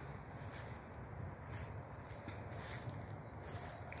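Faint outdoor background: a steady low rumble of distant road traffic and aircraft, with a few soft ticks above it.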